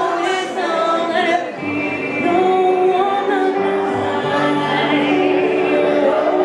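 Two women singing a pop medley built on the same four chords, accompanied by an electric keyboard, performed live.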